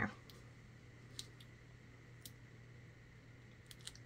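Nearly quiet, with a few faint, brief taps and clicks as fingers press small adhesive black dots onto a cardstock banner.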